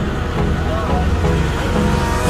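Low, steady rumble of a moving vehicle heard from inside its cabin, with a background song playing over it.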